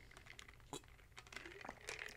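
Quiet sipping from a plastic shaker bottle: a few faint soft clicks of swallowing and handling.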